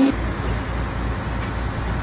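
A steady low rumble with an even hiss over it, like a vehicle's road noise. A faint high tone flickers through the first half.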